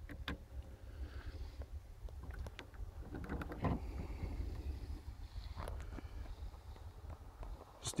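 Handling noise from a 1:50 scale diecast Kenworth T909 model being picked up and turned by hand on a metal checker-plate base. Scattered small clicks and knocks, two a little louder around the middle, over a low steady rumble.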